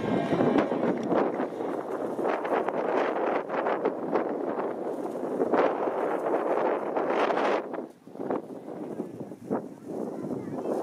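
Wind buffeting the microphone in uneven gusts, easing off about eight seconds in.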